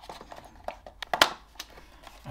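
Light clicks and knocks of plastic being handled: a USB-C power cable pushed into the socket of a Boundary smart alarm hub and the hub's plastic casing fitted towards its wall bracket, with the loudest knock a little past halfway.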